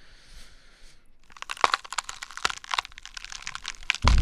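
A rapid, irregular run of crackling and crinkling clicks, starting about a second in after a faint hiss.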